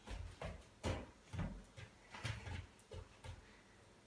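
A dog's paws stepping and shifting on an inflatable K9FITbone balance board and spiky half-ball balance pods: a run of irregular dull thumps and knocks, about eight in four seconds.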